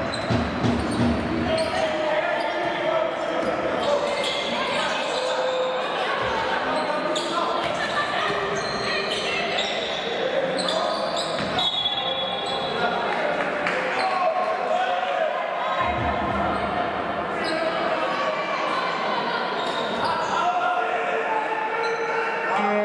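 Basketball game sound in a large hall: the ball bounced on the hardwood court in a run of dribbles early on, under voices of players and bench calling out throughout, with scattered knocks of play on the court.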